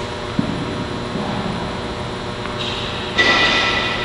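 Tennis ball knocked by a racket on an indoor court, a single sharp knock about half a second in, over a steady hum of ventilation. A little after three seconds a louder burst of hiss cuts in.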